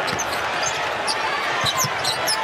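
Basketball being dribbled on a hardwood court, with sneakers squeaking over a steady crowd din.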